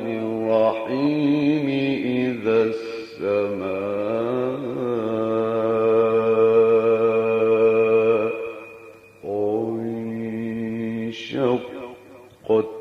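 A male reciter chanting the Quran in the melodic tajwid style, drawing syllables out into long held notes with ornamental wavering. One long sustained phrase runs from about three to eight seconds in, then breaks briefly before another phrase.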